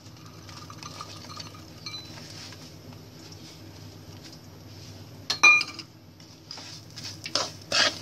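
Spoon stirring and scraping roasted semolina and dry fruits in a metal kadhai, over a steady low hum, with a sharp ringing clink of the spoon against the pan about five seconds in and a few softer knocks near the end.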